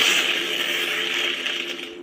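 A spell-casting sound effect from a lightsaber sound font: an airy hiss that starts suddenly and slowly fades, over the font's steady low hum.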